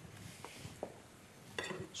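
Faint clicks and scraping of a spatula stirring diced eggplant frying in oil in a pan.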